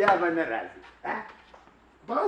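A man's voice in two short, loud outbursts: one right at the start lasting about half a second, and a shorter one about a second in.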